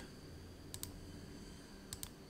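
A few faint clicks at a computer, stepping a weather-model map forward frame by frame: two close together just under a second in, and one more near the end.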